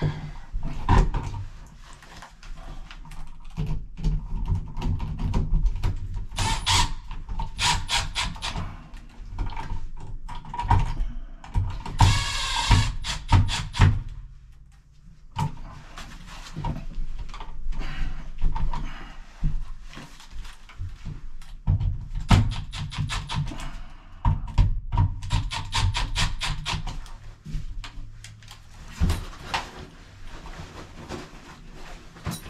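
Hands fitting a GFCI outlet and its cover plate into a wall box: scattered knocks and clicks of plastic and metal, with two spells of rapid ticking and a short whining tone about twelve seconds in.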